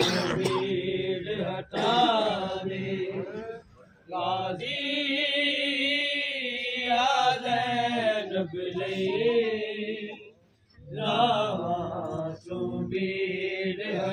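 A single lead voice chanting a noha, a Shia mourning lament, in long melodic phrases that waver in pitch, broken by short pauses about two, four and ten seconds in.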